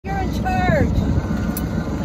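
Steady low rumble of a sailboat's motor running under way, with a person's voice heard briefly in the first second.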